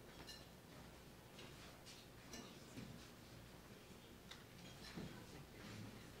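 Near silence: room tone with a faint low hum and scattered faint clicks and ticks.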